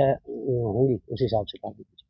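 A man's voice: a drawn-out hesitation vowel with a wavering pitch for most of the first second, then a few quick spoken syllables that stop just before the end.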